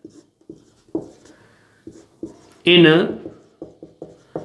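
Marker pen writing on a whiteboard: a string of short taps and scratches as each stroke is made, with a faint brief squeak a little over a second in. A man's voice says one word past the middle, louder than the writing.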